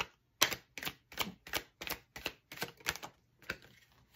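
A deck of tarot cards being hand-shuffled, the cards slapping together in a run of short, sharp strokes about three a second.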